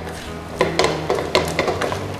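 A spatula stirring and scraping pork belly and long beans in sticky red curry paste around a nonstick wok, with several short sharp knocks as it strikes the pan's side.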